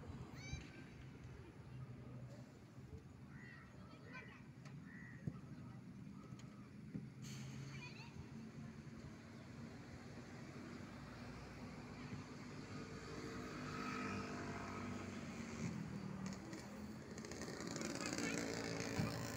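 Faint outdoor ambience: a steady low hum of distant road traffic with far-off children's voices, getting somewhat louder toward the end.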